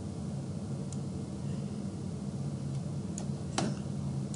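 A few sparse computer clicks from a mouse and keyboard, the clearest about three and a half seconds in, over a steady low hum.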